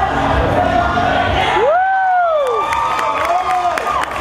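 Gym crowd cheering and whooping at the end of a pommel horse routine. One long shout rises and falls about two seconds in, and clapping starts near the end.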